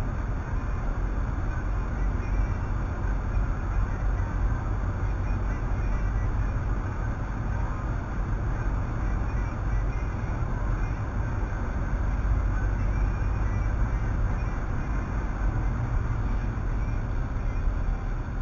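Steady road and engine noise inside a car's cabin, cruising at highway speed of about 57 mph.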